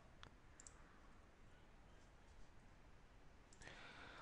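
Near silence: faint room tone with a faint click or two from computer mouse or keyboard use.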